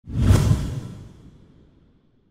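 Whoosh sound effect for an animated title card. It is a sudden rush of noise that peaks almost at once, then fades away over about a second and a half.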